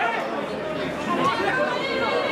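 Spectators in a football stand chattering, several voices overlapping.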